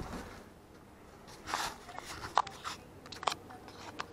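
Close handling noise of a camera being picked up and positioned by hand: a soft rustle about a second and a half in, then scattered short clicks and taps of fingers against the camera body.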